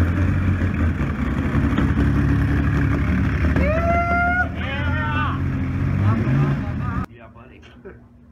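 Kawasaki KZ1300's inline six-cylinder engine, freshly started, running steadily, with a voice calling out over it midway; the engine sound cuts off suddenly near the end.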